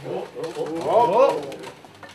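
A high-pitched voice calls out without words, its pitch gliding up and down for about a second and a half, then fades into faint room noise.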